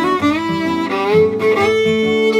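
Fiddle playing a waltz melody in long bowed notes, with a slide up in pitch about a second in, over guitar accompaniment.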